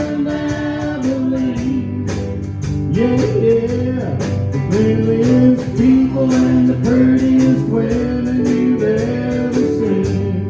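Live country band playing: electric guitar, electric bass and keyboard over a steady drum beat.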